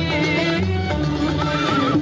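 Live recording of an Arabic orchestra playing in maqam Rahat al-Arwah. A high wavering ornament comes in about a second and a half in.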